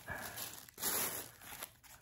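Packaging rustling and crinkling as items are handled and pulled out of an opened mail package, in two short bursts.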